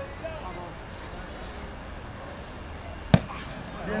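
Open-air background with faint distant voices, and one sharp knock or click about three seconds in.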